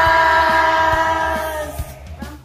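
A group of people shouting together in one long, held cheer that drops slightly in pitch and fades out near the end.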